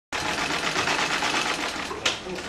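Sewing machine running, stitching at a rapid, steady pace.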